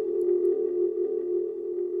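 Closing logo sting of synthesized music: one steady low tone held and slowly fading out.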